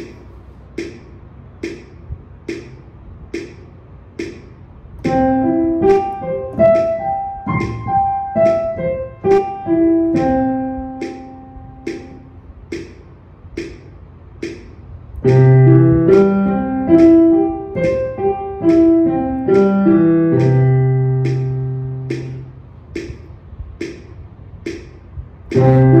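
Metronome clicking at 72 beats a minute while a piano plays a two-octave C major arpeggio up and back down, two notes to each click. The right hand plays about five seconds in, and the left hand plays lower from about fifteen seconds in. Between the passages only the clicks are heard.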